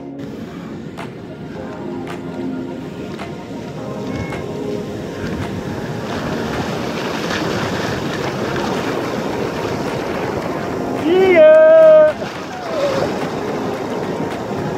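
Surf breaking and washing up a beach, with wind on the microphone. About eleven seconds in comes a loud shout from a person, lasting about a second.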